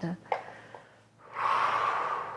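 A woman's long exhale through the mouth, starting a little past halfway and fading out slowly; it is the out-breath taken on the twist of a lying knee-rotation exercise.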